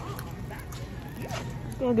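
Scratchy rustling of clothing and hands against a phone's microphone over a steady low hum, with a voice starting again near the end.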